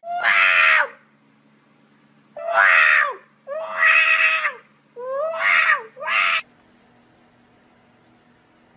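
A cat yowling loudly: five long calls, each holding its pitch and then dropping at the end, the last two close together.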